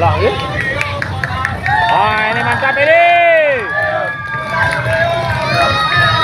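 Footsteps of a marching column on the road, with several voices shouting and calling over them, including one long rising-and-falling shout in the middle.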